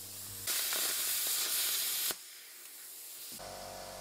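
Air plasma cutting torch (IPT-40) hissing as it cuts metal, starting about half a second in and cutting off abruptly about two seconds in. A fainter low hum follows near the end.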